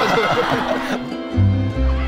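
Laughter for about the first second, then background music with a deep bass note coming in.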